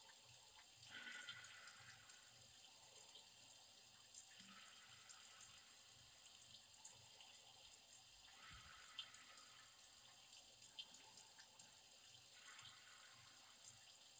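Near silence: faint steady room hiss, with four soft breaths a few seconds apart while a yoga lunge is held.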